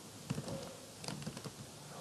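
Computer keyboard keys clicking as a word is typed, a quick run of about seven light keystrokes.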